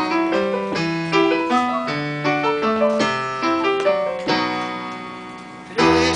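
Piano playing an instrumental passage between sung lines, notes and chords struck two or three times a second over a moving bass. The last chord is left to ring and fade out near the end.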